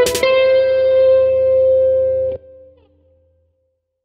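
Electric guitar ending a fast passage on one held, ringing note or chord, over a low bass tone. It is cut off sharply a little past two seconds in, and a faint tail dies away within about a second.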